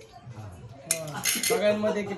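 Stainless steel spoons clinking against steel plates as a toddler handles them: a sharp clink about a second in, followed by a few lighter clatters. A short voice sound comes near the end.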